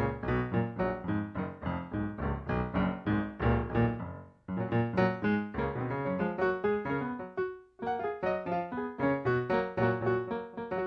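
Piano playing F-sharp major scales in double sixths: fast, even runs of paired notes. The runs break off briefly twice, a little after four seconds in and again near eight seconds, before starting again.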